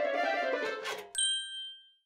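Light plucked-string background music ends about a second in, followed by a single bright bell-like ding that rings briefly and fades out, a cartoon cue as the mailbox opens.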